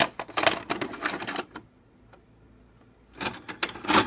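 A VHS cassette going into a four-head VCR's tape slot: rapid plastic clicks and mechanical clatter from the flap and loading mechanism, in a burst over the first second and a half and another from about three seconds in.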